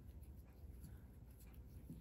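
Near silence with faint scratchy rustles and ticks of cotton thread being drawn through lace with a thin metal crochet hook, over a low room hum.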